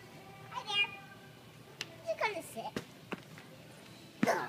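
A toddler's wordless vocalising: a short high squeal just under a second in and a cry falling in pitch about two seconds in, with a few light knocks between.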